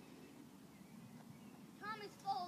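Faint outdoor background, then near the end a short high-pitched call from a child's voice, bending in pitch.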